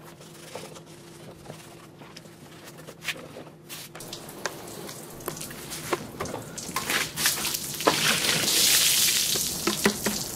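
Water splashing and dripping as a steel lawnmower deck is washed from a bucket, with scattered small splashes at first. About eight seconds in, water poured from the bucket over the deck makes a louder rush lasting a second or so.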